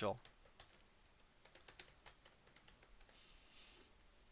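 Faint computer keyboard typing: a quick run of light key clicks, thinning out in the last second or so.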